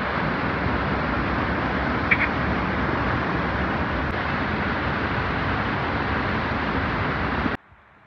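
Rushing water of a rain-swollen waterfall pouring over rocks into a muddy pool, a steady, loud rush that cuts off abruptly about seven and a half seconds in.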